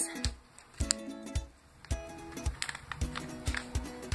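Background music with steady held notes, under a few light clicks and crinkles as a foil minifigure blind bag is handled and cut open with scissors.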